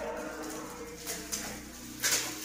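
Metallic gift-wrap foil crinkling faintly as it is pulled off a box by hand, with a bird cooing steadily in the background.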